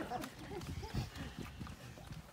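Faint, scattered chuckles from a small crowd, dying away.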